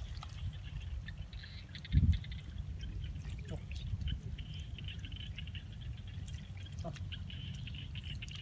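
Hands digging and feeling through wet paddy mud and shallow water, with faint squelches and splashes over a low steady rumble. One louder thump comes about two seconds in.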